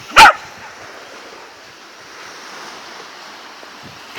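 A sprocker spaniel barks once, very loud and close, just after the start. Steady surf and wind noise follow.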